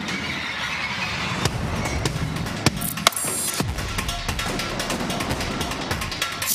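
Dramatic news-program opening theme music, punctuated by sharp percussive hits.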